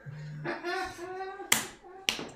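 A man laughing, then a single sharp slap of hands about one and a half seconds in.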